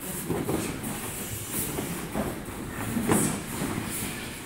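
Karate sparring on foam mats: irregular thuds of strikes and footfalls over a steady low rumble.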